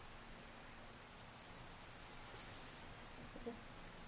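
Feather wand cat toy being waved, giving a quick run of high, thin chirps that starts about a second in and lasts about a second and a half.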